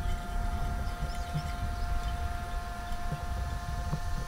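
Steady low background rumble with a faint, steady hum tone above it. No distinct strokes or clicks stand out.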